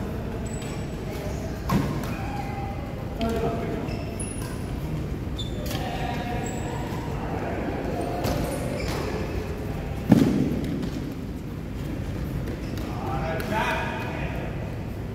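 Badminton play in a large echoing hall: a few sharp knocks of rackets hitting the shuttlecock, the loudest about ten seconds in, with players' voices calling in the background.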